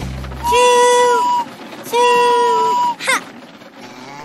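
Toy train whistle blown twice: two long, steady toots of about a second each, with a short gap between them. A brief quick swooping sound follows near the end.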